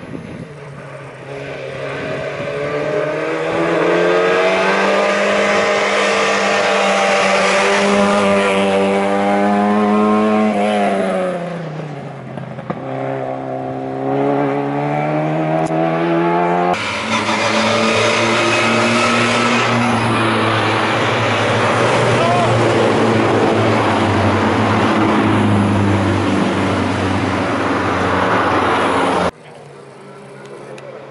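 Zastava Yugo hill-climb race car's four-cylinder engine driven hard, pitch climbing as it accelerates, falling about eleven seconds in, then climbing again. The sound changes abruptly about seventeen seconds in, runs at high revs, and cuts off shortly before the end.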